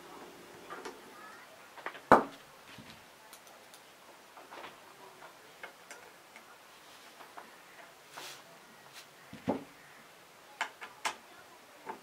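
Small metal clicks and taps of hand tools on a small screw and nut in a metal frame, with a louder knock about two seconds in and another late on.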